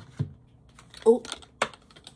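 Tarot cards being handled and set down on the table: a soft thump, then a few light, sharp clicks.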